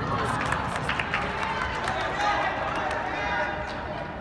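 Live indoor soccer game sound: players shouting and calling to each other over running footsteps, with many short sharp taps and knocks.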